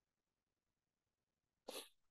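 Near silence, with one short breath drawn in near the end.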